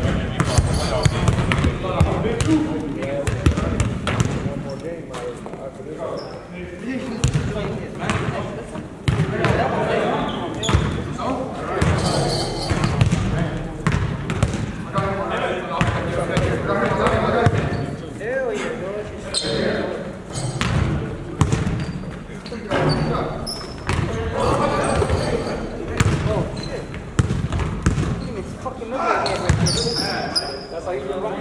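Basketball dribbling and bouncing on a hardwood gym floor during a pickup game, a run of short, sharp thuds, mixed with the indistinct voices of players in a large gym.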